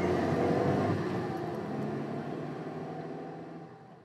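The closing synth chord of an electronic dance track fading out. The sound dies away steadily over about four seconds until nothing is left.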